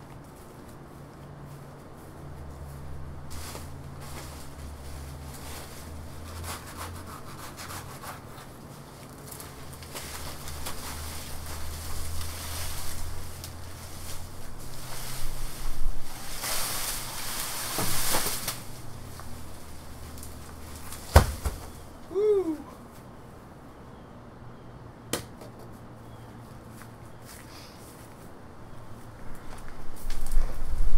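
Rustling and scraping of dry banana leaves and a cut banana stalk being pulled about, with scattered knocks and one sharp thump about two thirds of the way through. A low steady hum runs underneath.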